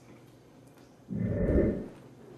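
A man with a mouthful of pizza makes one short, loud breathy sound through his nose and mouth about a second in, after a quiet start.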